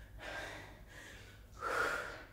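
A woman's heavy breathing from exertion during a dumbbell exercise: a short breath just after the start and a louder, sharper breath near the end.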